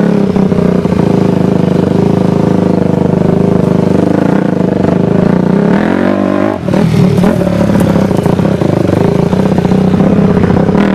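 Dirt bike engine running hard under steady throttle, heard close up from on board. Its pitch climbs a little, the throttle is shut off briefly about two-thirds of the way through, and then it is opened again.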